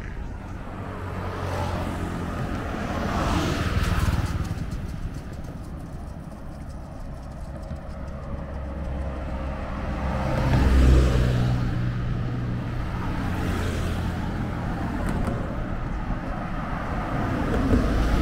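Road traffic passing close by: engine and tyre noise from passing vehicles swells and fades over a steady low rumble. It builds about three to four seconds in, is loudest at about eleven seconds as a small truck goes by, and rises again at the end as a bus approaches.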